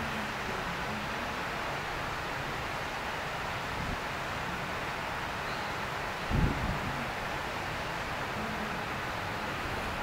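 Steady outdoor background hiss with wind on the microphone, and one brief low thump about six and a half seconds in.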